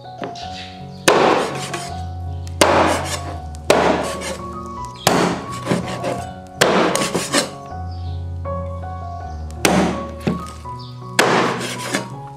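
Heavy meat cleaver chopping through raw pork ribs on a wooden chopping board: about seven loud thunks, each one to two seconds apart, with a few lighter taps between them. Background music plays under the chopping.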